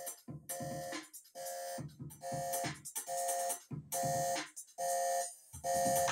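Home-made electronic demo song playing back from a music-production program: short, repeated synth or keyboard chord hits about once every second, over a low bass part, with brief silences between the hits.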